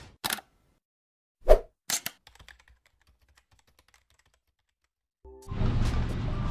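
Sound effects of an animated logo intro: a short sharp hit, a loud thump about a second and a half in, a quick high swish, then a scatter of faint ticks that die away into silence. Near the end, steady background noise of a busy indoor space comes in.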